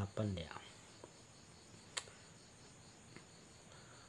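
Faint, steady, high-pitched pulsing chirr of insects in the background, with one sharp click about two seconds in.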